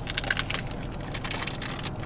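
Close-up crunching as a taco is bitten and chewed: a quick, irregular run of crisp crackles.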